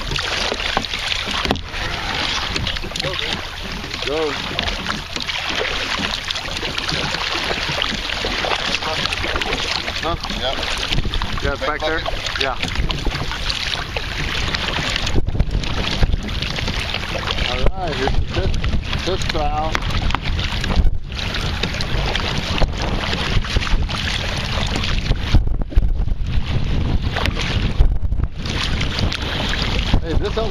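Kayak being paddled through shallow water, the paddle blades splashing and water washing around the hull, under steady wind noise on the microphone. Brief faint voices come through in places.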